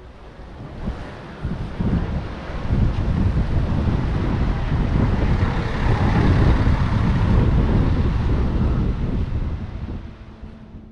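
Wind buffeting the microphone: a loud, rumbling gust that builds over the first couple of seconds, is strongest in the middle and eases off near the end.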